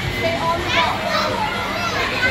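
Children's voices: high-pitched shouts and chatter of kids playing, over a steady background din.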